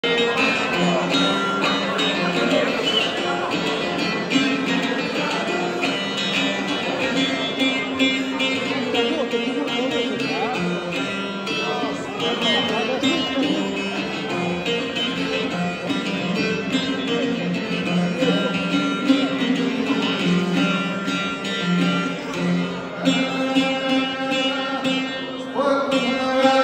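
A long-necked Albanian folk lute played solo, plucking a continuous folk melody, with some talk from the audience underneath.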